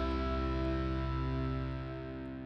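Background music: a held guitar chord ringing out and slowly fading.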